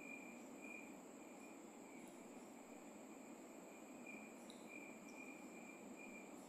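Near silence: faint room tone with a thin, high-pitched tone that comes and goes every second or so.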